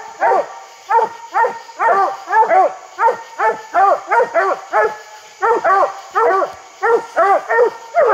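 Coonhounds barking treed at the base of a tree, a fast steady run of short chop barks, about three a second, with a brief break about five seconds in. Barking treed like this is the hounds' signal that they have their quarry up the tree.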